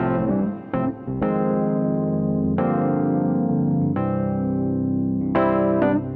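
Layered Toontrack EZKeys virtual keyboards, electric piano and piano parts, playing sustained neo-soul chords. A new chord is struck every second or so, and the parts are glued together with light bus compression.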